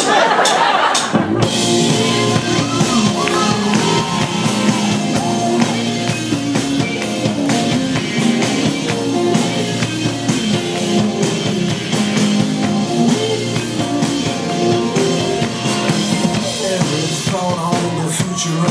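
A live band plays the instrumental intro to a song on keyboard and acoustic guitar with drums. It starts about a second in and runs on steadily.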